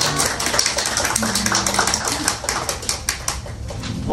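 A small audience clapping by hand, irregular and thinning out about three seconds in, with a few voices underneath.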